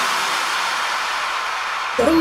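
A steady wash of white noise with the beat and bass dropped out: a noise-sweep transition effect in an electronic dance remix, easing off slightly toward the end.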